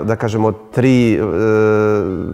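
A man's speaking voice: a few quick syllables, then one long drawn-out vowel held steady for over a second, a hesitation in mid-sentence.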